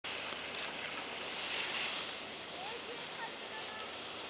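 Steady outdoor hiss of wind and snow noise on the microphone, with one short click about a third of a second in and faint distant voices.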